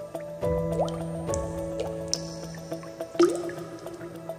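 Water drops falling with a few short rising plinks, over a soft, steady ambient music bed.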